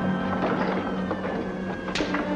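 Orchestral film score, with a low note held steady beneath it.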